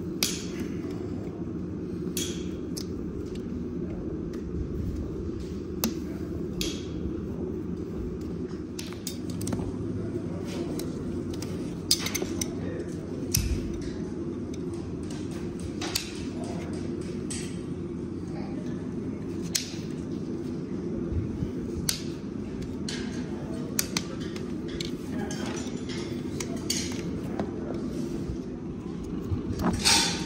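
Hoof nippers and a hoof knife cutting and paring a pony's dry, hard, overgrown hoof horn: irregular sharp snaps and clicks every second or two over a steady low background murmur.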